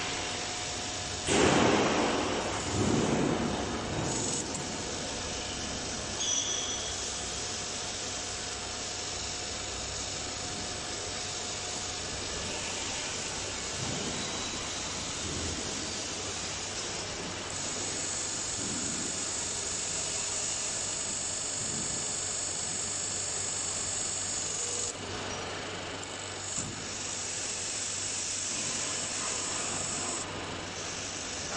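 A 5-ton hydraulic decoiler running under test: a steady machine hum and hiss, with a loud clatter about a second and a half in and a high, thin whine for several seconds past the middle.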